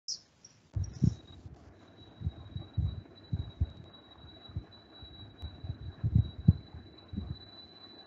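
Irregular low thumps and knocks picked up by an open microphone in an online meeting, with a faint steady high-pitched whine starting about two seconds in.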